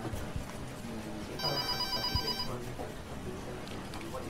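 A telephone rings once in the middle: a short, pulsing electronic ring lasting about a second.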